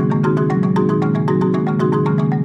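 Percussion quartet playing a fast, evenly repeating mallet-percussion pattern, many struck notes a second, with low notes sounding underneath.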